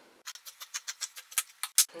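Scissors snipping through knit fabric: a quick run of crisp snips, about eight a second, the last one the loudest.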